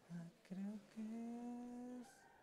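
A person humming three notes, each a little higher than the one before, the last held for about a second.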